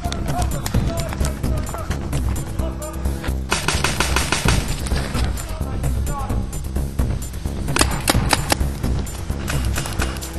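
Background music with a steady beat, over which a paintball marker fires a rapid run of shots from about three and a half seconds in.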